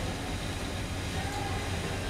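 Room tone in a pause between spoken lines: a steady low hum with a faint even hiss.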